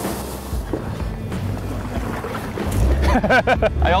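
Motorboat running at speed, with wind buffeting the microphone over a steady low engine hum. Men's voices and laughter come in about three seconds in.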